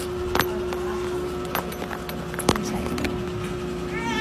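Handling noise from a phone held close while filming: a few sharp clicks and knocks, the loudest about half a second in and about two and a half seconds in, over a steady background hum.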